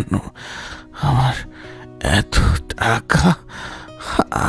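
A man coughing and clearing his throat in several short bursts, over a soft sustained music bed.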